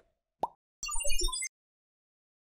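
Animated logo sound effect: a short pop about half a second in, then a quick falling run of four blips over high twinkling notes and a low rumble, cutting off suddenly at about a second and a half.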